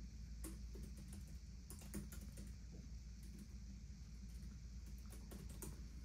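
Laptop keyboard being typed on: faint, irregular runs of key clicks over a low steady hum.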